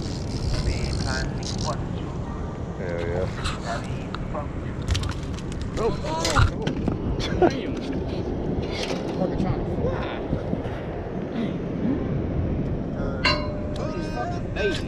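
Indistinct voices of several people talking off-mic over a steady low background rumble.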